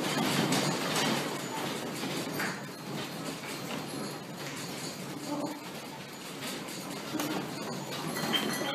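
A room shaking in an earthquake: a continuous rattling din with occasional clinks, easing off over the first few seconds, with faint distant voices.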